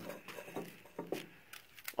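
Metal handle rod sliding through a steel tube welded to a steel file-cabinet smoker, giving a few light metal clicks and scrapes.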